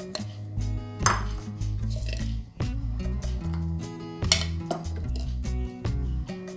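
Background music with a steady low bass line, over which kitchenware knocks and clinks about four times, as chillies go into a plastic blender jar and a small plate is handled.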